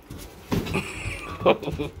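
Two house cats scuffling: a drawn-out, wavering cat cry with a sharp knock about one and a half seconds in.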